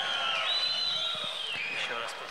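Audience applauding in an arena hall, with a thin high tone gliding slightly up and down over the clapping.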